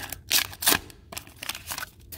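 Foil wrapper of a 1991 Upper Deck baseball card pack crinkling as it is torn open and the cards are pulled out: a few sharp crackles in the first second, then softer rustling.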